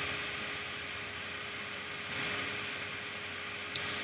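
Steady background hiss of the recording with a faint steady hum under it, broken by a couple of faint short clicks about two seconds in and again near the end.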